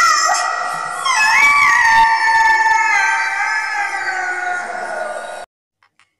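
A long, high, drawn-out howl that wavers at first, then holds one note that sags slowly in pitch for about four seconds before cutting off suddenly near the end.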